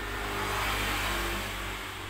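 A motor vehicle passing: a steady rushing noise with a low hum underneath, swelling and then easing off.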